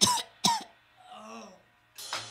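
A man's voice at a microphone making two short, rasping, cough-like bursts about half a second apart, followed by a quieter, wavering vocal sound.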